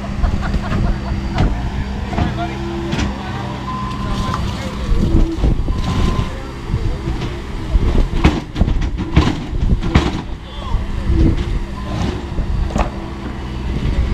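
Compact track loader's diesel engine running under load as it shoves a heavy waterlogged wooden dock section across pavement, with irregular knocks and scrapes, busiest about two thirds of the way in.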